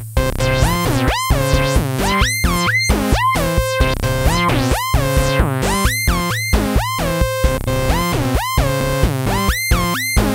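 Electronic music played on a Korg Volca Bass synthesizer and Korg Volca Beats drum machine. Repeated synth notes each swoop quickly up in pitch and then hold, about two a second, over a steady low bass line and short drum-machine hits.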